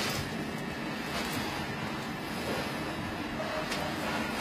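Steady rushing noise of wind on the camcorder's microphone outdoors.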